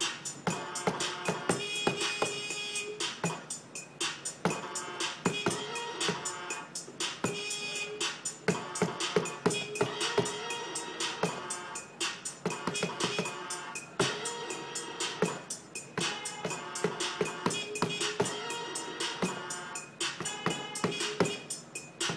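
A beat finger-drummed on an Akai MPD32 pad controller from sampled horn sounds loaded into Ableton Live. Short pitched horn samples recur among rapid percussive hits in a steady rhythm.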